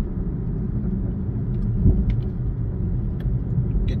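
Steady low road rumble inside the cabin of a car moving along a freeway, with one brief thump about two seconds in.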